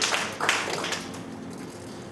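A woman crying into a handheld microphone, with a few sharp sobbing breaths in the first second that die away into quiet.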